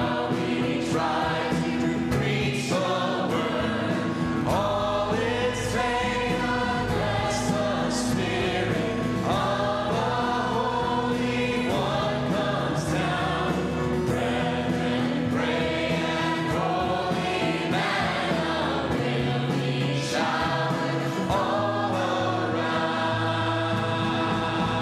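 Church choir of adult and children's voices singing a worship song together, led by a singer on microphone, over sustained instrumental backing.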